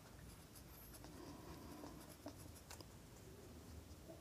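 Faint scratching of a pen tip writing figures on paper.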